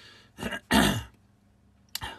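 A man clearing his throat: a short rasp followed by a louder, longer one about three-quarters of a second in.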